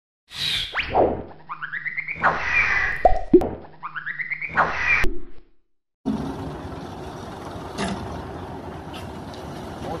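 A channel-intro sting of springy, swooping cartoon sound effects lasting about five seconds, cut off sharply. After a brief silence, a steady low outdoor background of a front-loader tractor's engine running, with a couple of faint clicks.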